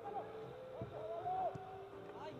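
Players' voices calling out during a football match, including one longer drawn-out call, with a couple of short knocks.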